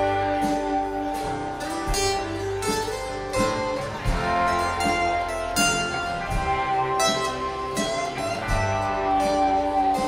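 Live acoustic band playing an instrumental passage: picked acoustic guitars over upright bass, with no singing.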